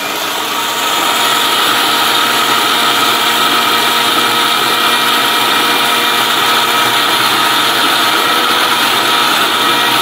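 Ficco mixer grinder running steadily, its motor and blades whirring as they grind red chilli spice in the stainless steel jar.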